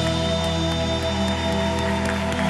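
Live band music holding steady sustained chords, the closing bars of a Macedonian evergreen song, with no clear singing voice.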